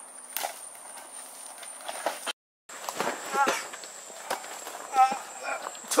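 Footsteps and rustling in dry brush and leaf litter, then a brief dropout in the sound, followed by a man's short strained cries and grunts amid scuffling on the ground.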